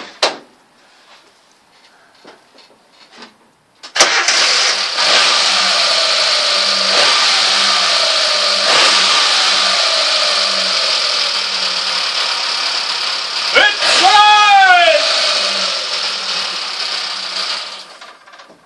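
Suzuki SJ-series 4x4's newly fitted engine catches suddenly about four seconds in and runs loudly. Around fourteen seconds in it is revved once, the pitch rising and falling back, and it shuts off near the end.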